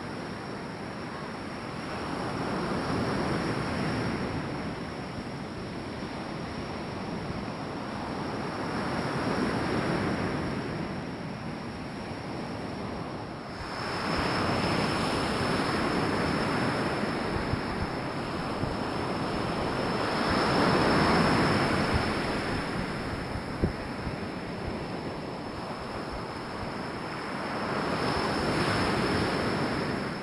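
Ocean surf: waves breaking and washing ashore, swelling and fading about every five to six seconds, with wind on the microphone.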